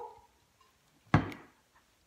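A single sharp knock about a second in, short and hard, fading quickly.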